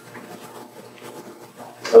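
Quiet room tone with faint, scattered small sounds, then a man's voice starts near the end.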